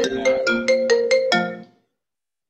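A phone ringtone playing a quick melody of short, bright struck notes, about five a second, that cuts off near the end.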